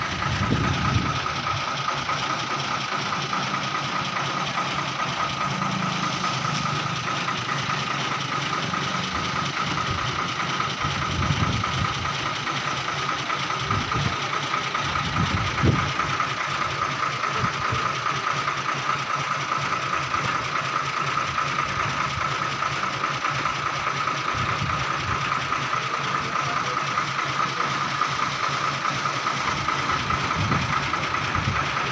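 A heavily loaded twelve-wheel truck's diesel engine idling steadily while the truck stands still, with a few brief louder low surges around the middle.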